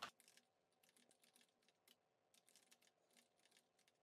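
Faint typing on a computer keyboard: a run of quick, irregular keystrokes as a spreadsheet formula is entered.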